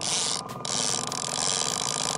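Downrigger paying out cable as its weight goes down, a steady mechanical whir with the fishing reel's clicker ratcheting rapidly as line is pulled off.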